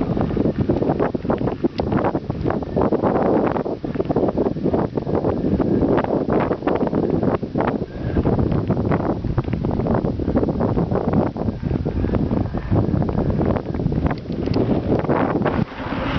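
Wind rushing over the microphone of a camera on a mountain bike riding fast down a gravel track, with many small knocks and rattles from the bike jolting over the bumps.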